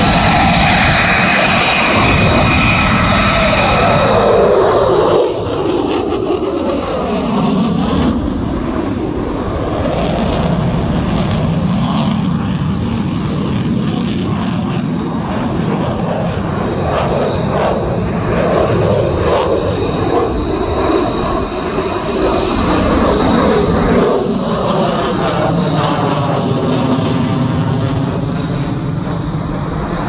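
F-22 Raptor's twin Pratt & Whitney F119 turbofan engines roaring loudly as the jet flies its demonstration maneuvers overhead. The pitch of the roar sweeps up and down as the jet passes and turns.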